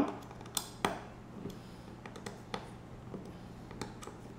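A handful of scattered light clicks and taps from a hex screwdriver working a screw into a carbon-fibre drone frame, with the frame shifting in the hands.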